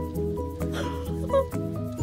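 Background music with held notes over a steady pulse.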